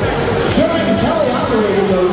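A man's voice over a public-address system, with the steady din of a crowded gymnasium behind it.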